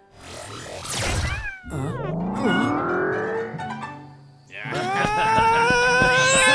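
Cartoon sound effects as a lion cub is magically grown into a giant. A quick falling swoosh comes about a second in, then a rising pitched sound. Near the end a loud, long startled yell slowly rises in pitch.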